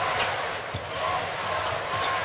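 A basketball being dribbled on a hardwood court, a few low bounces over the steady noise of an arena crowd.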